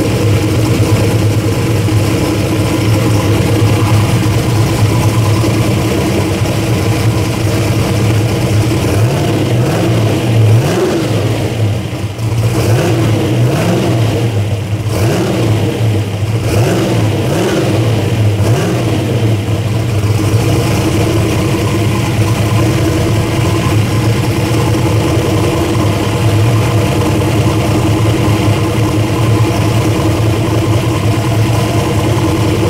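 Car engine idling with its ignition timing locked at 30 degrees by a Holley EFI static timing check, revved up and let off several times in the middle before settling back to a steady idle.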